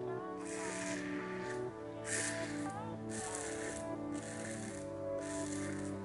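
Soft background music of slow held chords, with several short scraping strokes of a safety razor cutting through lather and stubble.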